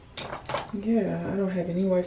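Two light clicks of a makeup container, most likely the setting powder, being handled, followed by a woman talking.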